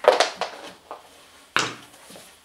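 Knocks and clicks of hands handling equipment at a carpeted rack case: a sharp knock at the start, a few small clicks, then a second strong knock about one and a half seconds in, in a small room.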